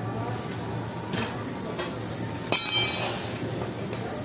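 A short, loud, high-pitched squeal about two and a half seconds in, lasting about half a second, over steady background noise.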